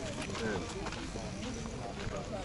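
People talking while walking, with footsteps on a gravel path.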